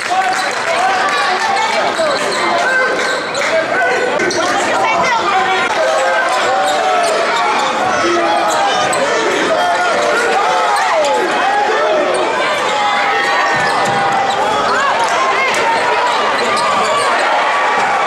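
Sounds of a basketball game in a gymnasium: a basketball bouncing on the hardwood floor, with many short squeaks and calls from sneakers, players and spectators overlapping throughout.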